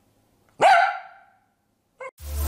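A dog barks once about half a second in, a single short bark that fades out within a second.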